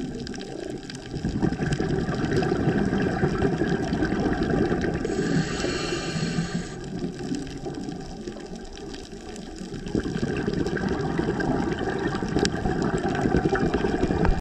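Scuba regulator breathing heard underwater: a hissing inhale about five seconds in, between rumbling, bubbling exhalations.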